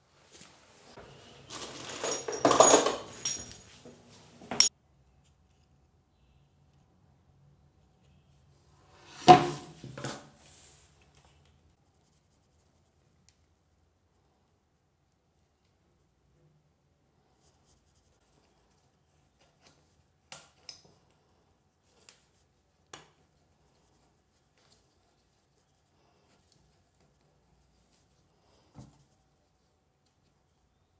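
Chrome-plated plumbing fittings and a braided stainless-steel hose clinking and rattling as they are handled and screwed together by hand: a burst of rattling in the first few seconds that stops abruptly, another about nine seconds in, then scattered light clicks.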